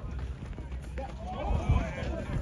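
Several people's voices shouting and calling out at once, loudest in the second half, over a low rumble on the microphone.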